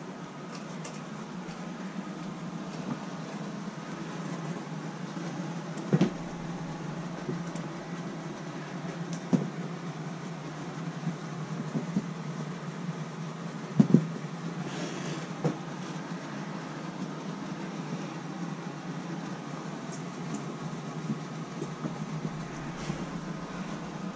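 Fleece cage liners being handled and smoothed down by hand, with a few soft knocks, over a steady low hum.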